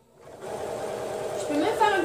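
Computerized domestic sewing machine starting up about a third of a second in and then running steadily, stitching through fabric.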